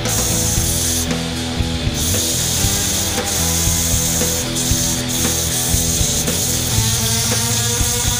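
A hand chisel scraping and cutting wood spinning on a homemade electric-motor-driven wood lathe. The cutting breaks off for about a second near the start, then carries on. Background music plays underneath.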